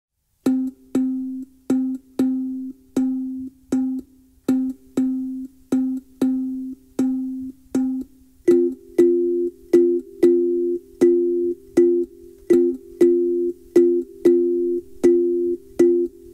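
Steel tongue drum struck by hand in a steady rhythm of about two notes a second, each note ringing and dying away. From about halfway a second, higher note sounds with every stroke.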